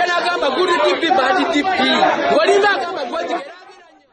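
Voices talking continuously, the sound fading out near the end.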